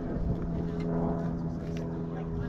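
A steady low motor hum, like an engine running at an even speed, holding one unchanging pitch throughout.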